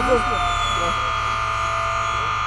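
Steady high-pitched buzz of a radio-controlled model airplane's electric motor in flight, with a tone that slides slightly lower over the first second and a half as the plane passes. Brief voices at the very start.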